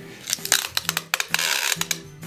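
Handheld tape gun clicking and rattling as it is handled while the free end of the packing tape is pulled off the roll and threaded through. About one and a half seconds in, there is a short crackling peel of the tape coming off the roll.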